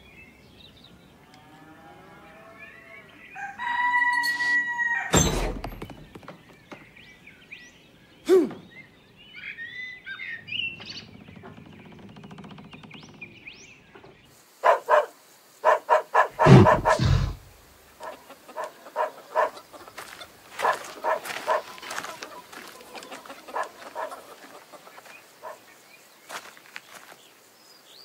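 Cartoon sound effects: bird and fowl calls and chirps. There is a held pitched call about four seconds in, a loud thump about five seconds in, a few heavy thumps around the middle, and a run of rapid short chirps in the last third.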